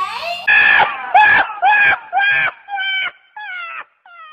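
A donkey braying in a run of about eight high, repeated calls that grow fainter and shorter toward the end. It is an edited-in clip that starts and stops abruptly.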